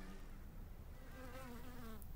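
A honeybee buzzing in flight: a faint hum that wavers up and down in pitch.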